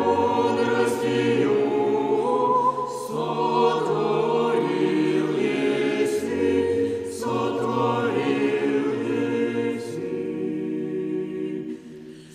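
Russian Orthodox church choir singing chant a cappella in sustained harmony over a low bass line, the chords changing every second or two. A phrase ends with a brief pause near the end.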